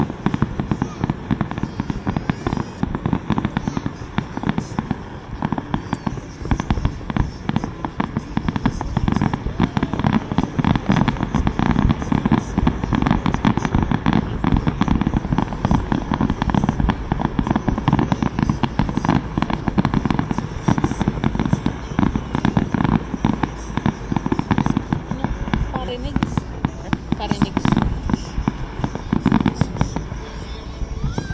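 A fireworks display in a dense barrage: aerial shells bursting in rapid, overlapping bangs, many a second, without a break.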